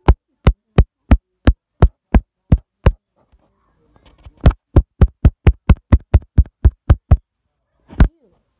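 A finger tapping directly on the phone's microphone, making loud, sharp thumps in a steady beat of about three a second. After a short pause the taps return faster, about four a second, with one last tap near the end.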